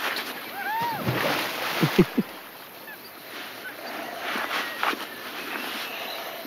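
Outdoor lakeside beach ambience: a steady wash of wind and water. A bird gives two short rising-and-falling calls about a second in, and a few soft, low thumps come around two seconds in.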